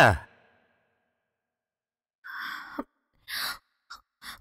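A person's breathy sighs: a longer one about two seconds in, then two or three short ones near the end.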